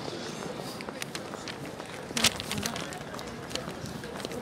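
Steady city plaza background noise with scattered sharp knocks and clicks of footsteps and phone handling; the loudest knock falls a little past halfway.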